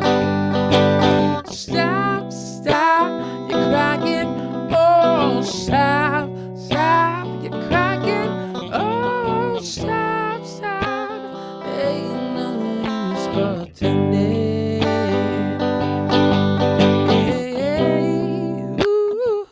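A man singing a song while strumming a Stratocaster-style electric guitar, with the vocal line rising and falling over sustained chords.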